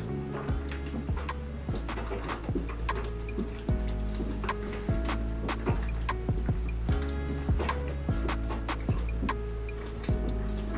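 Background music with a steady drum beat over a sustained bass line.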